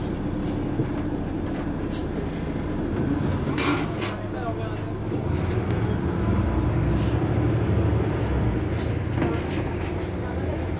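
Mercedes-Benz Citaro C2 hybrid city bus engine running with a steady low rumble. There is a brief hiss a little before halfway, and the rumble grows louder through the second half.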